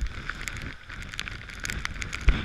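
Storm-force wind buffeting the camera's microphone in uneven gusts, with rain ticking sharply and irregularly against the camera housing.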